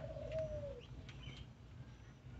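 A bird call: one drawn-out low call that wavers slightly and falls at its end, followed a little after a second in by a faint, brief high chirp.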